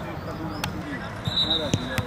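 Football being kicked on an artificial-turf pitch, with a sharp thud of a kick at the end, among players' short shouts and calls.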